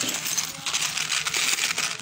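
A silver-tone matha patti and jhumki set with chains and tiny bells jingling and clinking as it is handled and pulled from its plastic sleeve: a dense, continuous run of small metallic ticks with a crinkly rustle.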